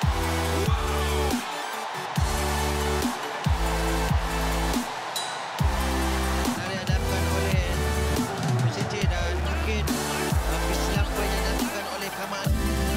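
Background electronic dance music with a heavy, repeating bass line broken by short downward pitch drops.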